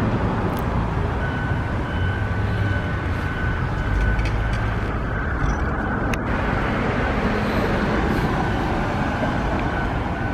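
City street traffic: cars going by with a steady rumble, with a faint steady high whine through much of it.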